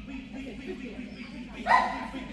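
A border collie barks once, short and loud, near the end, over a steady low hum.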